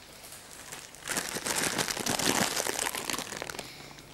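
Crinkly packaging being crumpled and rustled as a person settles down onto it. It is a dense, loud crackle that starts about a second in and lasts roughly two and a half seconds.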